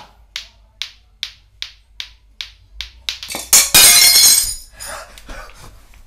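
Lato-lato clackers knocking together in a steady rhythm, about two and a half clacks a second. About three and a half seconds in, a loud crash as a dinner plate is struck by the clackers and smashes.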